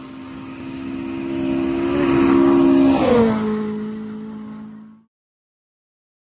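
Rally car approaching and passing at speed, its engine note growing louder and rising slightly, then dropping in pitch about three seconds in as it goes by and fading away. The sound cuts off suddenly near the end.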